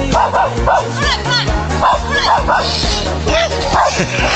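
A dog giving a run of short, high yelps, each rising and falling in pitch, several a second, over background music.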